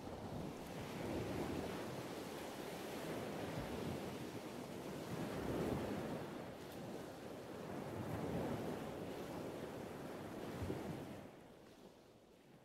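A rushing ambience that swells and eases every few seconds, then fades away near the end.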